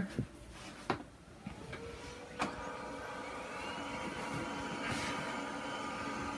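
Brother HL-2170W monochrome laser printer waking up for a print job. After a few light clicks, its motors and fan start a steady hum about two seconds in, with a whine that rises in pitch and then holds.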